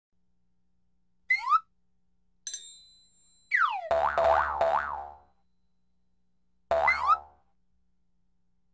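Cartoon sound effects: a short springy boing, a bright ringing chime, then a falling swoop into three quick rising zips over a low thump, and one more boing near the end.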